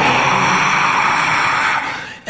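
A man's voice held in one loud, sustained, rasping roar with no words, mimicking the noise of a heavy-metal set. It fades slightly near the end.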